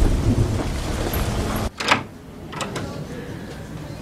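A low outdoor rumble cuts off suddenly less than two seconds in, giving way to a quiet room where a door handle and latch click, followed by a second, lighter click.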